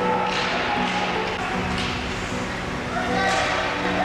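Background music with sustained notes over ice-rink practice sound: players' voices and the taps and knocks of sticks and pucks on the ice.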